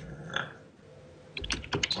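Computer keyboard keystrokes while moving through a file in a text editor: a few light clicks near the start, a quiet gap, then a quick run of clicks in the last half second.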